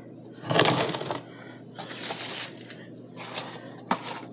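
Rustling and light clattering of things being handled on a kitchen counter: one louder scuffing rustle about half a second in, softer scuffs later and a short click near the end.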